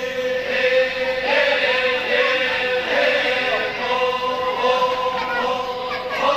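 Voices chanting a slow, wavering melody over a steady held drone note: traditional Toraja funeral chanting.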